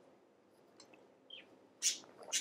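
A mostly quiet stretch with faint small ticks and a short squeak from a clear plastic pot as an orchid's root ball is worked out of it, then a brief hiss near the end.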